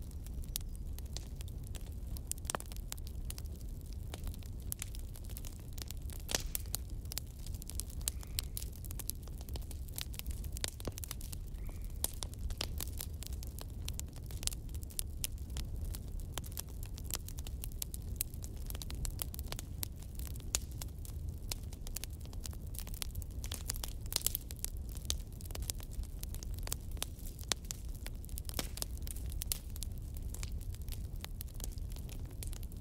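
Wood fire in a fireplace crackling: frequent irregular sharp pops and snaps over a steady low rumble.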